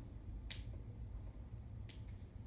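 Two short, sharp clicks about a second and a half apart, over a steady low room hum.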